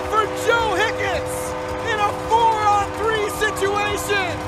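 Excited play-by-play commentary on a hockey goal, the announcer's voice rising and falling over a steady held tone underneath.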